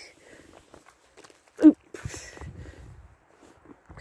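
Footsteps in wet snow: faint, irregular soft crunches and low thuds. About one and a half seconds in comes a brief vocal sound, the loudest moment.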